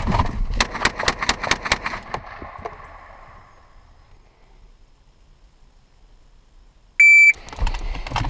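A Glock pistol fired rapidly from inside a pickup truck's cab: about ten shots in under two seconds, their ringing dying away over the next two seconds. About seven seconds in comes a single short electronic beep.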